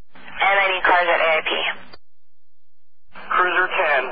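Police dispatch radio: voice transmissions over a narrow-band radio channel, with a short burst of speech, about a second of dead air, then the next transmission starting.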